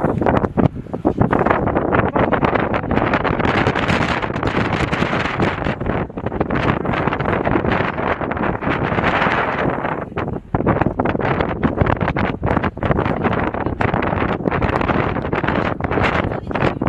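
Wind blowing across the microphone: a loud, steady rushing that rises and falls in gusts.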